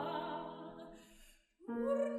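Soprano and Bösendorfer grand piano in a zarzuela romanza: the phrase dies away over about a second, there is a short silence, then the piano comes back in near the end.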